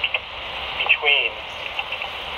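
Railroad radio traffic over a scanner: steady static hiss with a short burst of thin, band-limited voice about a second in, part of a Form D track authority being read over the air.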